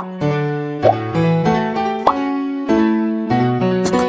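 Instrumental keyboard music with no singing: chords struck in a steady pulse about every two-thirds of a second, with short rising blips about a second in and about two seconds in.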